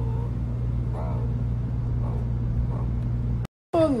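A steady low mechanical hum, like a motor or engine running, with a few faint rising-and-falling voice-like sounds over it; it cuts off abruptly about three and a half seconds in.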